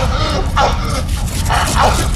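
Short shouted calls, four in quick succession, each falling in pitch, over a steady heavy low drone from the band's amplified sound at a live electro-metal show.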